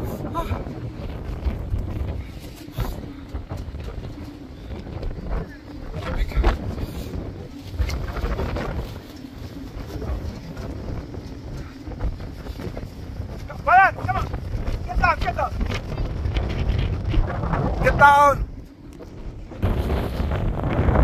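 Wind buffeting the phone's microphone in gusts, a rough low rumble throughout, with a few short voice calls about 14, 15 and 18 seconds in.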